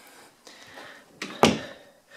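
A single short thump about a second and a half in, over quiet room tone.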